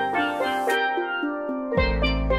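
Double tenor and single tenor steel pans playing a melody of quick, ringing struck notes. A deep bass comes in near the end.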